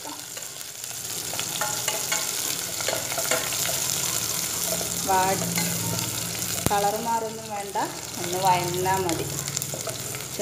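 Sliced garlic and onion sizzling as they fry in a stainless steel pot, stirred with a wooden spoon scraping the pan, with a sharp tap of the spoon on the pot about two-thirds through. A few short wavering pitched sounds rise over the sizzle in the second half.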